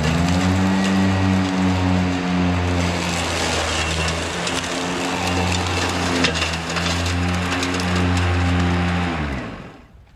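Ego Z6 battery zero-turn mower's electric blade motors spinning up with a rising whine, then running steadily with a loud hum, a hiss and scattered ticks of debris, after the blades had bound up on something. The motors wind down and stop about nine seconds in.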